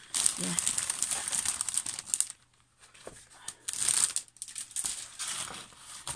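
Clear plastic packaging sleeve crinkling as a printed embroidery canvas is handled and pulled out of it: about two seconds of crinkling, a short pause, then another burst near the middle and softer rustling after.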